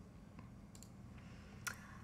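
Faint computer mouse clicks over quiet room hum: a few light clicks in the first second and a sharper one near the end.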